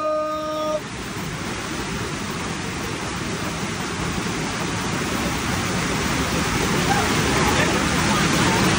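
Steady rushing noise of running water, slowly growing louder. A group's shout is held over the first second and then breaks off.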